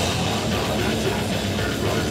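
A heavy metal band playing live at full volume: distorted electric guitar and bass over a pounding drum kit.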